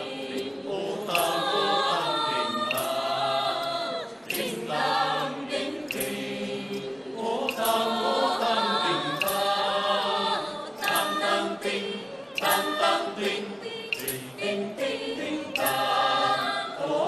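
Choir of men and women singing a Vietnamese folk song, with short sharp taps now and then.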